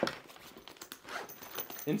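Sling bag being handled: a sharp knock, then a continuous fine rustling and ticking of bag fabric and zipper as the bag's charging cable is handled.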